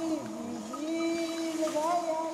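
Portable record player playing a record out on the ice: slow, drawn-out wavering tones, each held about a second and sliding up and down in pitch.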